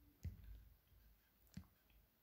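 Near silence with two faint computer mouse clicks, one shortly after the start and one near the end.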